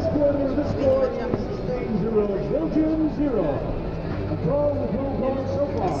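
Indistinct voices talking throughout, over a steady low hum.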